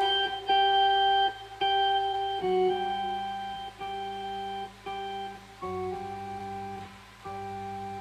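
Organ playing an instrumental passage of held chords, changing about once a second, over a sustained low bass note.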